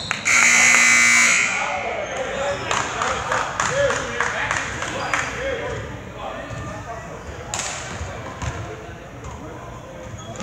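A gym scoreboard buzzer sounds once, lasting about a second, just after the start. Then a basketball is dribbled on the hardwood floor amid sharp shoe squeaks and crowd voices in an echoing gym.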